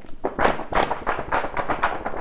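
A floppy paperback book being bent and flapped by hand, its pages and soft cover slapping in a quick, continuous run of flaps.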